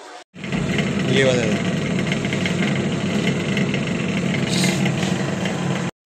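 Small motorcycle engine running steadily with an even low pulsing, heard from the rider's seat.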